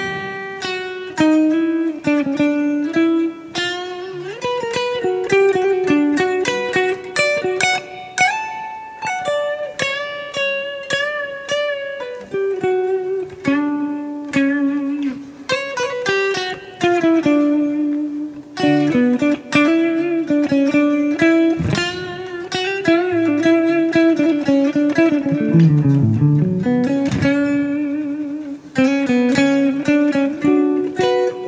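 Ibanez Universe seven-string electric guitar on a clean amp tone playing a melodic solo of single picked notes, with string bends and vibrato.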